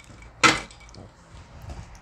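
A single short knock about half a second in, like a hard object being set down, with faint handling noise around it.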